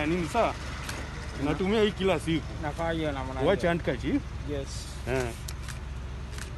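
Men's voices talking at close range, over a steady low rumble.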